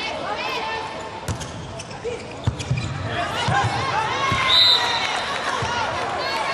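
A volleyball bounced on the court floor several times by the server, over crowd chatter in an arena, then a short referee's whistle about four and a half seconds in, signalling the serve.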